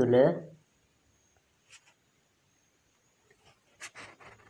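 A voice reading aloud stops about half a second in, leaving a pause of near silence with a faint click, and a short sharp breath or lip sound just before the speech picks up again.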